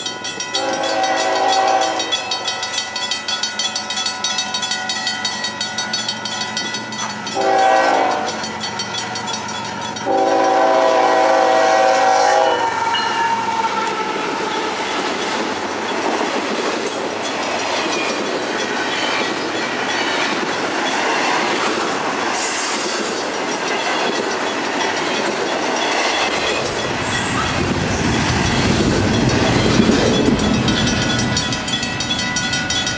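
Grade crossing bell ringing steadily while an approaching diesel locomotive sounds its horn: a long blast, a short one, then a long one held for about two seconds. The train then passes through the crossing with steady wheel and rail noise, a deeper rumble building near the end.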